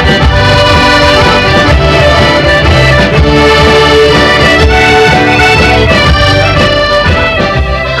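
Piano accordion playing a traditional Scottish tune with the band, a steady pulsing bass beat underneath.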